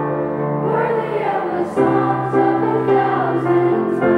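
A children's choir singing a worship song together, over long held low chords that change about every two seconds.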